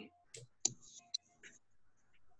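A few faint, short clicks and handling noises over a video-call microphone, scattered through two seconds.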